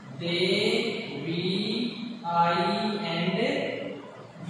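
A man's voice speaking in two long, drawn-out phrases, with a brief dip between them about two seconds in.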